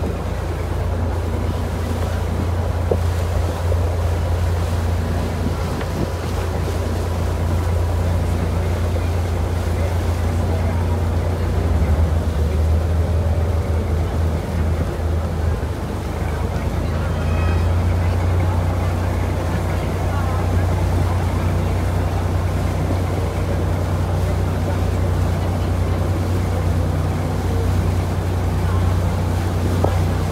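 Small wooden motor sampan's engine running steadily under way, a low drone that shifts slightly in the middle, with water washing along the hull.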